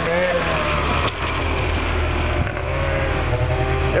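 Snowmobile engine idling nearby, a steady low drone, under people talking.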